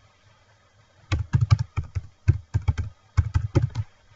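Typing on a computer keyboard: a quick run of keystroke clicks starting about a second in, with a short pause near the middle, as a short phrase of about a dozen characters is typed.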